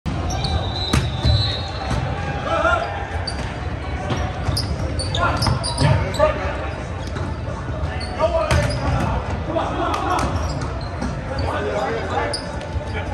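Indoor volleyball rally in a gym hall: repeated sharp smacks of hands striking the ball, shoes squeaking on the hardwood floor, and players' voices calling out, all echoing in the hall.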